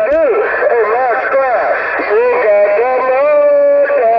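Speech received over a Uniden Grant LT CB radio's speaker on channel 6 (27.025 MHz), thin and cut off in the treble, with no words that can be made out. Near the end one sound is held steady for most of a second.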